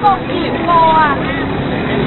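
People's voices and crowd chatter over a steady background noise, with one voice rising and falling in pitch about a second in.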